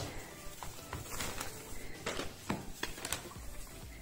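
Light rustling of a thin plastic bag and a few soft taps as raw black pomfret slices are lifted out and laid into a plastic bowl, over faint background music.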